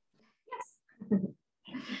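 A woman's short "yes" broken into a few brief vocal sounds, then the start of a laugh near the end.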